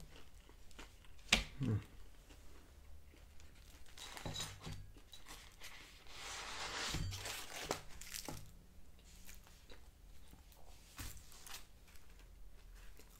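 Thin plastic wrapping crinkling and tearing as it is handled and pulled open, loudest in a long crinkle about six to seven and a half seconds in, with scattered rustles and a sharp tap a little over a second in.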